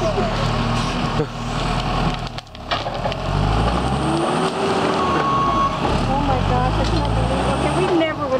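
New Holland skid-steer loader's diesel engine running as the loader works a tree stump and root ball. The engine drops briefly about two and a half seconds in, then runs harder under load.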